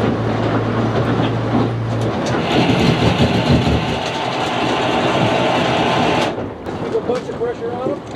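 Boat's outboard motor humming, which cuts out about two seconds in; then a loud rough grinding scrape for about four seconds that stops suddenly, the hull running aground on the shallow riverbank.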